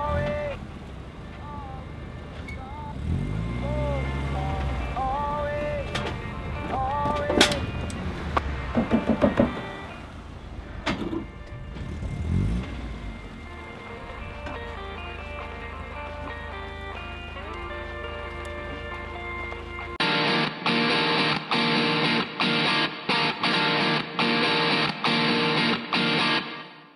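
A quieter stretch with a low rumble and pitched sounds gliding up and down. About twenty seconds in, electric guitar chords cut in abruptly, played in short stop-start bursts.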